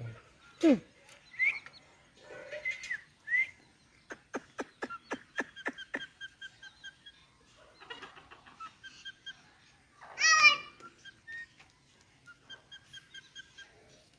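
Indian ringneck parrot vocalizing on the hand: short whistled chirps and rapid clicking, with one loud, harsh call about ten seconds in.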